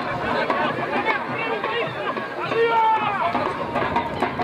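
Several voices shouting and calling over one another at a rugby match, with one louder, drawn-out call a little after halfway.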